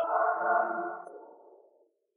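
A synthesized ringing sound effect: several steady tones sounding together, fading away over about a second and a half.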